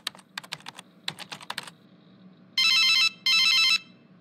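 Quick keyboard typing clicks at a computer, then a telephone rings with two short bursts of a warbling electronic trill, each about half a second long.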